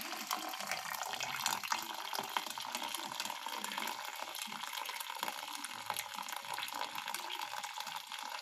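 Brewed coffee poured slowly from a pot in a steady stream through a fine wire-mesh strainer into a pitcher, a continuous liquid splashing.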